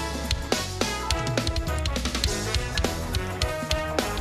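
A drum kit played in a fast, busy groove along with a music track. Kick, snare and cymbal hits come several times a second over the track's sustained bass and chord notes.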